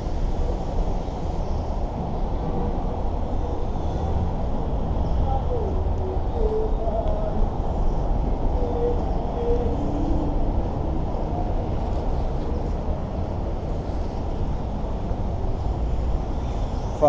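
Steady low rumble of city traffic from the freeway overhead and the surrounding roads, with faint distant voices now and then.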